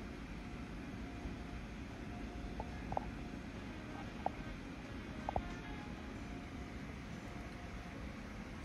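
Quiet room tone: a low steady hum with a faint steady tone, broken by a handful of faint short clicks near the middle.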